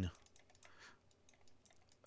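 Faint clicking at a computer, over quiet room tone.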